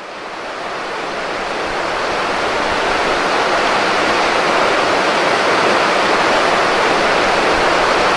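River water rushing steadily, growing louder over the first few seconds.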